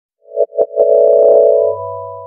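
Short electronic musical ident: three quick stabbed notes, then a held synthesizer chord with a high note and a low bass note added, which fades out.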